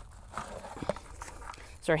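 Quiet handling sounds of a handheld dissolved oxygen meter and its coiled probe cable being picked up: a few light knocks and rustles over a faint steady background.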